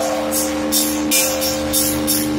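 Church bells rung by hand through ropes tied to their clappers, in the Orthodox manner: a quick run of bright strikes on the small bells, about five in two seconds, over the steady hum of the larger bells ringing on.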